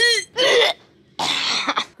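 A woman gagging twice, a short rough heave and then a longer, harsher one, as she retches from disgust.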